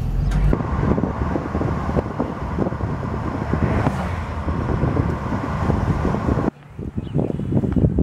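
Wind buffeting the microphone over road and engine noise from a convertible driving with its top down. It cuts off suddenly about six and a half seconds in, leaving a much quieter outdoor background.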